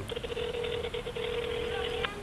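Ringback tone of an unanswered mobile phone call, heard from the phone's earpiece held to the ear: one steady low tone lasting about two seconds, signalling that the called phone is ringing.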